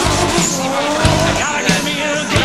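Drift car sliding sideways with its tyres squealing and its engine running hard, over rock music.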